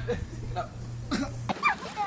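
Short vocal sounds from a person, not words, over a steady low hum. About one and a half seconds in the sound cuts to other audio with brief high-pitched young voices.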